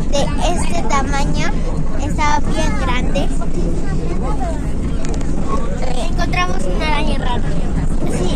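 Steady low rumble of a moving bus's engine and road noise heard from inside the cabin, with a girl's voice talking over it in the first few seconds and again near the end.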